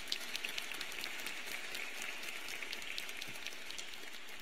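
Audience applause: many hands clapping steadily.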